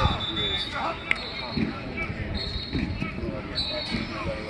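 Open-air football practice: voices calling out across the field and a sharp smack about a second in, typical of a football hitting a receiver's hands, over a low rumble.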